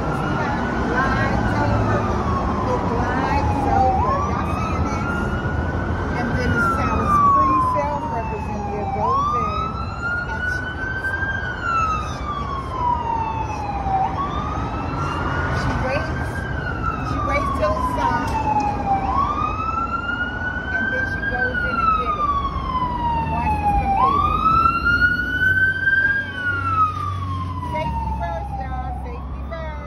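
Emergency vehicle siren sounding a wail: a tone that rises quickly and then falls slowly, repeating about every five seconds, six times, over a steady low traffic rumble.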